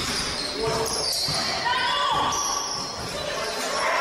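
Basketball being dribbled on a wooden gym floor, with players' voices calling out, all echoing in a large hall.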